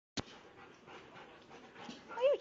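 Two Alaskan malamutes play-fighting at close range: faint panting and scuffling, after a single sharp click at the very start.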